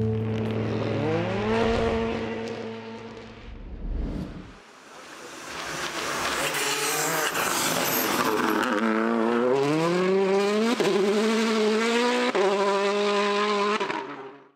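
Rally car engine accelerating hard on a gravel stage, its note climbing and breaking at several quick upshifts, with a lull about a third of the way through and tyre and gravel noise under it.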